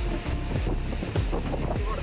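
Wind buffeting the microphone over background music with a steady bass beat, about two deep thumps a second.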